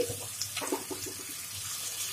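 Chicken pieces and chopped onion sizzling steadily in hot mustard oil in a wok.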